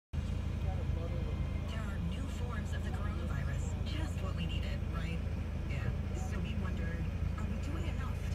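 Steady low engine rumble heard from inside the cabin of a stopped car. Quiet voices talk over it now and then, with no clear words.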